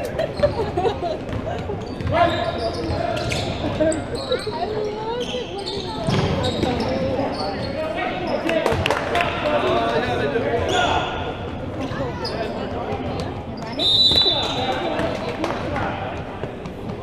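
Basketball being dribbled and bouncing on a hardwood gym floor during play, with players' voices calling out and echoing in the large hall. A brief high-pitched tone sounds near the end.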